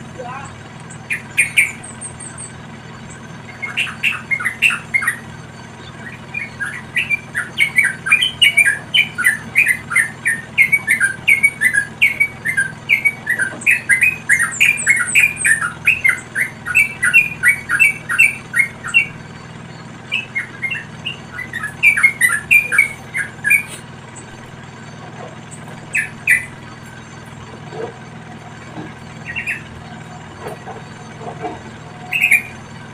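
Yellow-vented bulbuls calling in rapid runs of short, sharp chirps, several a second. A long run goes from about four seconds in to about nineteen, a shorter run follows, and a few single calls come near the end.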